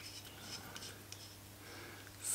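Faint rubbing and a few light ticks as an Optimus fuel pump's threaded fitting is turned by hand onto a multifuel stove's fuel-hose connector, over a steady low hum.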